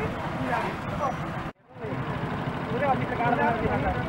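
Several people talking at once over motorcycle engines running at idle; the sound drops out abruptly for a moment about a second and a half in, at a cut in the footage.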